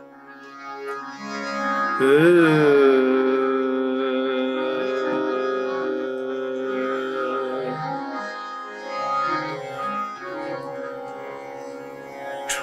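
Hindustani classical male vocalist singing, with harmonium and tanpura accompaniment: about two seconds in he slides up into a long held note that lasts about five seconds, followed by shorter, softer phrases.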